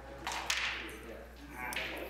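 Crokinole shot: a flicked wooden disc slides across the board and strikes another disc with a sharp click about half a second in, followed by a short sliding rattle as the discs move.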